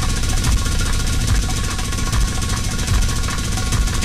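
Loud live band music dominated by heavy drums and bass thumps, with keyboard tones held over them.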